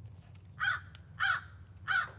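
A crow cawing three times, evenly spaced about half a second apart.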